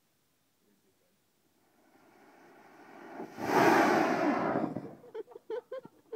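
A hand-held sparkler bomb fizzing with a hiss that grows louder, then flaring up about three seconds in with a loud rushing burn that lasts about a second and a half before dying away.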